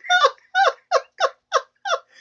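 A man's high-pitched, squeaky laughter in six short bursts, about three a second, each falling in pitch.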